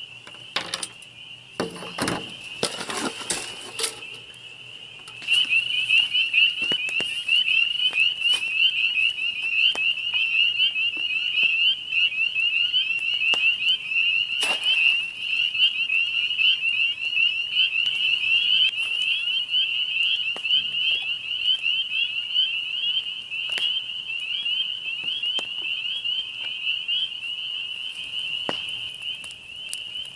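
A dense chorus of small frogs, a steady mass of rapid high-pitched peeps and trills, starting loudly about five seconds in. Before it come a few clicks and rustles.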